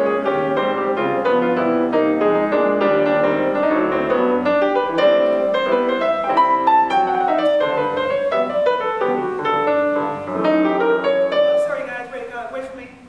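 Solo jazz piano: a grand piano played with a flowing melody line over chords, notes struck several times a second.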